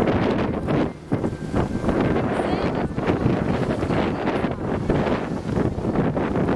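Strong wind buffeting the camera microphone on a sailing yacht under way, a steady rumble with a brief lull about a second in.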